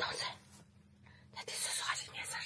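A woman whispering: two short breathy phrases, one at the start and one about a second and a half in.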